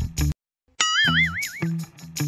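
Background music with plucked guitar and bass drops out for a moment. About a second in, a cartoon 'boing' sound effect with a wobbling pitch plays as the music returns.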